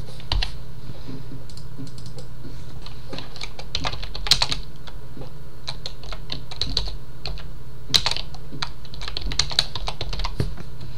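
Computer keyboard being typed on in irregular bursts of keystrokes, over a steady low hum.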